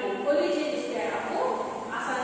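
Speech: a woman's voice talking with a lilting, sing-song pitch, as in reading a lesson aloud.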